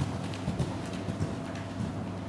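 Hoofbeats of a horse moving over an indoor arena's sand surface: dull thuds at an uneven pace, over a steady low hum.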